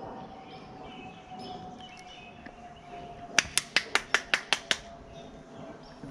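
A quick run of about eight sharp clicks or taps, about six a second, lasting a little over a second, midway through; faint bird chirps in the background.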